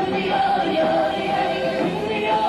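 Live group singing: several voices singing a folk song together in harmony, with guitar accompaniment.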